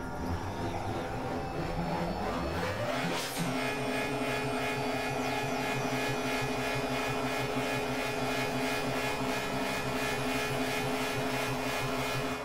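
Experimental electronic synthesizer drone music. A sweep rises in pitch over the first three seconds, then settles into a held cluster of steady tones with a fast, even pulsing flutter.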